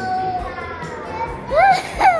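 A young girl's fake crying on cue, an exaggerated "ugly cry": a long held wail that slowly sags in pitch, then a louder wail that rises and falls near the end.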